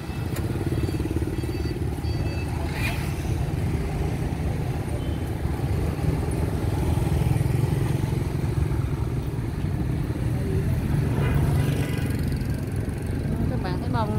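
Passing motorbike traffic: a steady low engine rumble that swells twice as bikes go by.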